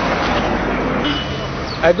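Road traffic noise, a steady rush of passing vehicles that eases off after about a second and a half.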